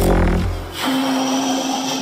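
Beatboxer's deep vocal bass drone, fading out within the first second, followed by a single steady held vocal note.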